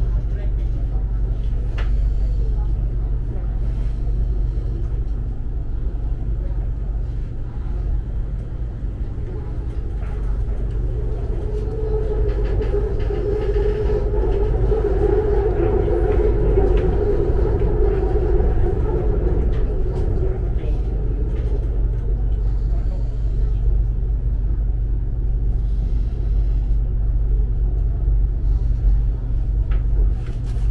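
Bangkok BTS Skytrain carriage running, heard from inside: a steady low rumble, with a hum that swells about eleven seconds in and fades about ten seconds later.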